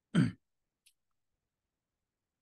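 A man clearing his throat once, briefly, followed by a faint click.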